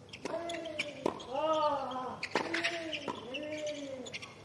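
Tennis ball hit back and forth in a doubles rally on a hard court: about five sharp racket strikes and bounces spaced under a second apart. Between the shots come drawn-out vocal cries, each lasting about half a second.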